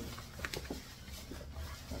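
Tissue paper rustling and crinkling as it is pulled out of a paper gift bag, with a few short crackles about half a second in.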